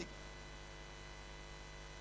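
Faint, steady electrical mains hum from the microphone and sound system, with thin high tones above it and no change throughout.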